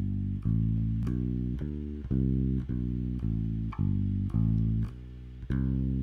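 Electric bass played fingerstyle with a three-finger ring-middle-index pluck: a run of single low notes, about two a second, stepping between pitches.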